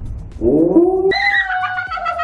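A French bulldog's drawn-out, high-pitched whining howl that rises about half a second in, then holds and slowly sinks, wavering in pitch. A few low thuds come just before it.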